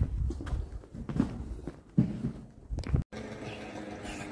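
Footsteps of people walking, uneven knocks spaced roughly half a second to a second apart over a low rumble, cut off suddenly about three seconds in.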